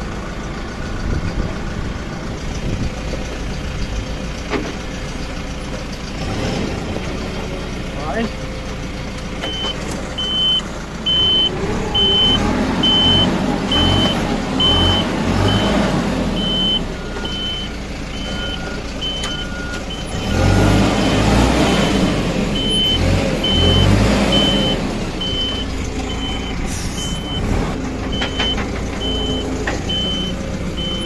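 LS tractor's diesel engine running and working harder twice, the sound swelling with a throbbing low pulse, as it struggles to pull out of mud. From about a third of the way in a high-pitched beep repeats about once a second, with a lower beep for a few seconds in the middle.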